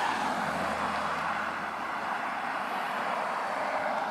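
Steady rushing rumble of a freight train's cars rolling past on the rails, easing off slightly toward the end.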